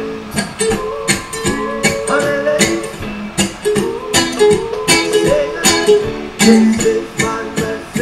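Electric cigar box ukulele strummed, sounding chords with repeated sharp strokes.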